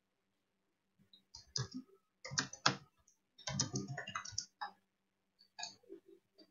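Computer keyboard typing in quick bursts of key clicks, over a faint steady low hum.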